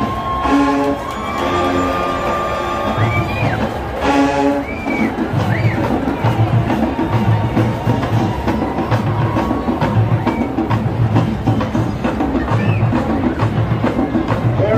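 Jackson State University marching band playing on the field. Brass chords come in short blasts over the first few seconds, then the drumline and low brass settle into an even, pounding beat.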